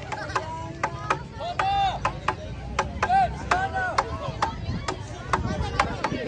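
Young girls' high-pitched voices shouting and calling out, with a run of sharp claps about three a second underneath.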